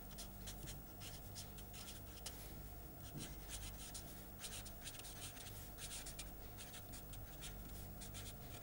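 Marker pen writing on paper: a run of faint, quick, scratchy strokes as words are written out by hand, over a steady low electrical hum.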